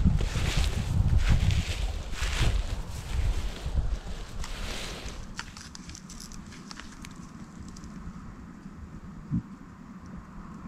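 Footsteps in snow and brush rustling as someone walks, with wind buffeting the microphone, for about the first five seconds. After that it goes quieter, with a few small clicks and rustles.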